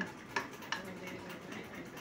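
Wooden spatula clicking lightly twice against a nonstick frying pan within the first second while it pushes a knob of butter through hot oil, over a faint sizzle of the butter melting.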